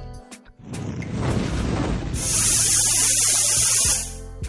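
Channel-intro sound effect: a rising whoosh swells up about a second in, then gives way to a bright, hissing shimmer from about halfway.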